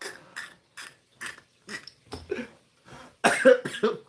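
A man coughing in a string of short bursts as a hard laugh breaks down, with gasping breaths between; the loudest coughs come about three seconds in.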